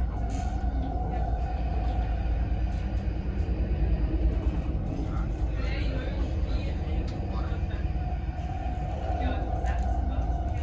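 Interior running noise of a BLS Stadler MIKA (RABe 528) electric regional train under way: a steady low rumble with a steady hum above it. Passengers' voices are heard in the background.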